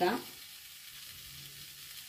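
Shredded carrot and other vegetables frying in an aluminium pan: a faint, steady sizzle.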